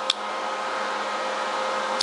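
Steady machine whir with a few faint steady hum tones in it, and one short click just after the start.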